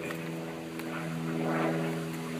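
An engine running steadily at one unchanging pitch, a constant drone under the outdoor air.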